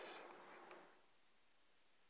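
Chalk writing on a blackboard: faint scratches and a few light taps in the first second, then near silence.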